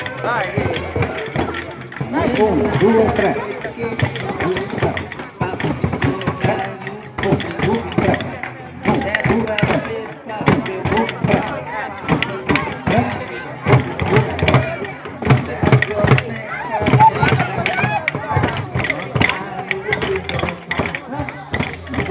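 Many children's drumsticks clicking in an uneven, scattered patter, densest in the middle and later part, over crowd chatter.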